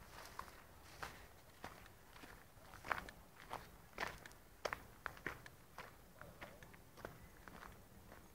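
Faint footsteps of a person walking over outdoor ground: an irregular series of short scuffs and clicks, about one or two a second.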